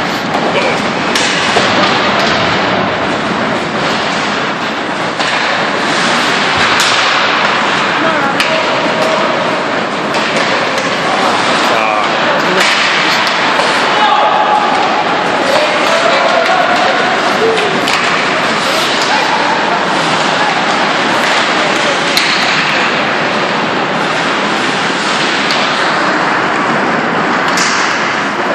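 Echoing din of an ice hockey game in a rink: spectators' voices mixed with skating and play noise, cut by repeated sharp knocks of the puck and sticks against the boards.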